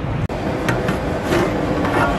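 Steady low rumble of a stove burner heating a large aluminium pot of curry at the boil, with a few light metal clinks as the pot's aluminium lid is lifted off.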